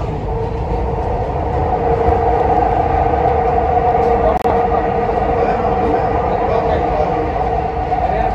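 Dubai Metro train running at steady speed, heard from inside the carriage: a continuous low rumble with a steady hum over it, and one brief click about halfway through.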